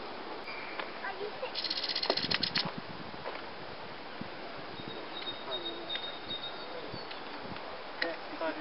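A dry, rapid rattling bird call lasting about a second, starting about one and a half seconds in, typical of an adult mistle thrush's alarm rattle near its fledglings. Faint thin bird calls come and go around it.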